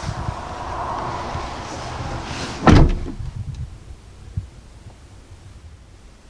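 Second-row seat of a 2019 Hyundai Santa Fe sliding along its track with a rustling, scraping noise, then stopping with one loud, heavy thump about two and a half seconds in.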